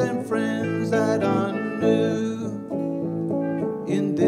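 Acoustic guitar strummed in a live song, with other accompaniment.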